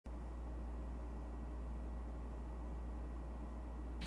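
Steady low hum with a faint background hiss; no music or speech.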